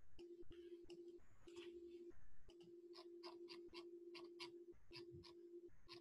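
Faint computer keyboard typing: a run of quick, light key clicks as a password is typed in. Under it runs a faint steady low tone that breaks off briefly now and then.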